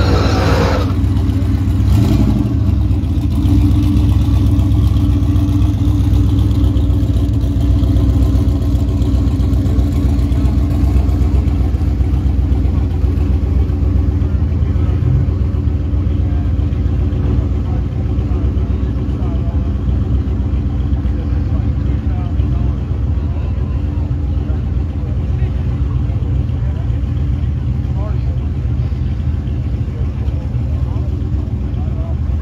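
Drag-race car engines idling with a loud, deep, steady rumble while the cars stage at the start line. A louder engine sound fades out in the first second.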